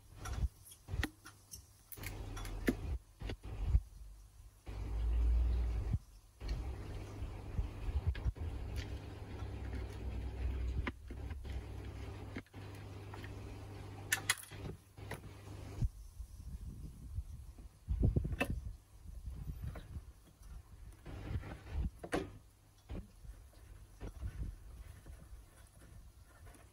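Plastic dechlorinator filter housing being worked on by hand: scattered clicks, knocks and scrapes as the bowl is taken off and the cartridge is offered back in, with a low rumble about five seconds in.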